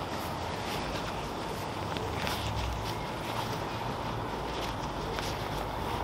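Steady outdoor background noise with a low rumble, and a few faint rustles from a fabric flag being handled and draped over the shoulders.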